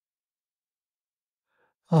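Near silence in a pause between a man's words, then a faint breath just before his voice comes back near the end.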